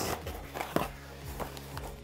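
Faint scraping and a few light taps of cardboard as the flaps of a small cardboard box are pulled open, over a low steady hum.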